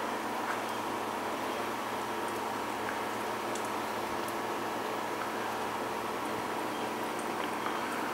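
Water trickling steadily down inside a PVC vertical hydroponic tower, kept flowing by its recirculating pump.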